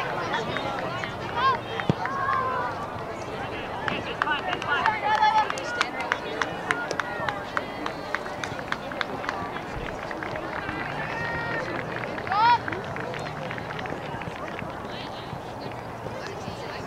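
Youth soccer field sound: scattered shouts and calls from players and spectators across the pitch, one rising call standing out about twelve seconds in, with a run of short ticks in the middle.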